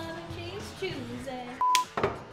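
Background music with a voice over it. Near the end comes a short, steady electronic beep of about a fifth of a second, which is the loudest sound, and right after it the sharp clack of a film clapperboard snapping shut to open the bloopers.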